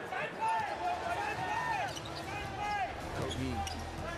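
On-court basketball sounds: sneakers squeaking repeatedly on the hardwood floor in short, high chirps, with a ball bouncing, over steady arena background noise.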